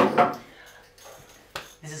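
A man's short vocal burst, then a quiet stretch and a single sharp click about a second and a half in, before talk resumes.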